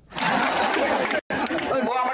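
A man addressing a gathering, his voice over crowd chatter. The sound cuts out briefly just after a second in.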